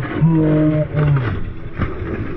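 A man's long drawn-out yell of alarm at a motorcycle-and-car crash, held for about a second and falling off at the end. A brief clatter of crash debris follows near the end.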